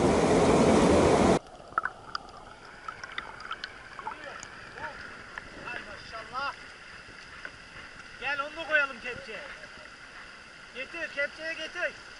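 Loud rushing stream water close to the microphone, with laughter over it. It cuts off abruptly a second or so in, leaving a much quieter streamside background in which faint, arched, pitched calls come back every couple of seconds.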